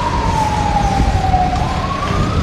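A vehicle siren wailing, its pitch falling slowly and then beginning to rise again near the end, over the steady rumble of vehicles driving on a dirt road.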